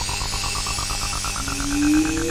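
Acid techno: a fast pulsing synth line, about ten notes a second, rising steadily in pitch over a steady low beat. A sliding synth tone comes in near the end.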